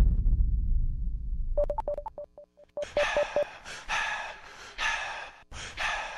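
Electronic sound effects in a robot-themed dance track during a break in the beat: a deep bass tail fades out, then a quick run of short electronic beeps, then a string of short breathy, hissing bursts.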